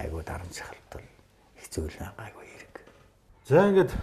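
Men's conversational speech: a few quiet, low-level words with pauses, then one louder voiced word just before the end.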